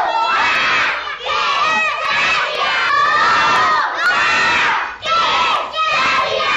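A group of children shouting and cheering together, in a run of loud shouts about a second apart.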